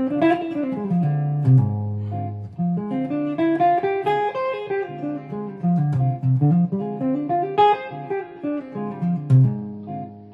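Semi-hollow electric guitar playing a flowing single-note jazz line, an F pentatonic scale with one note flatted to fit a D minor 7 flat 5 chord, the notes shifting in pitch throughout over a lower moving part.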